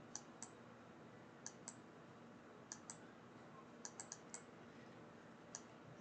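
Faint, light clicks of a stylus tip tapping a tablet screen with each handwritten stroke, about a dozen at uneven intervals over near-silent room tone.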